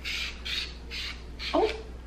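Plastic vegetable peeler with a peel-catching cap scraping down a cucumber's skin in four quick rasping strokes, about two and a half a second.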